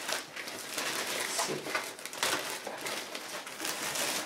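Thin plastic shipping bag crinkling and rustling in uneven bursts as it is pulled and worked off a shoebox.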